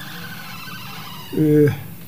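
A man's speaking voice: a pause of about a second and a half, then one short drawn-out syllable that falls in pitch, heard close to a studio microphone.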